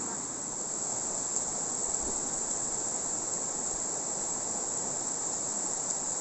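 A steady, high-pitched insect drone in tropical forest, over the even rush of a rocky river.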